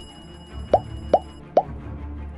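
Subscribe-button animation sound effects: three quick pops, each dropping sharply in pitch, close together, with the ring of a notification-bell ding fading out under them. Background music runs underneath.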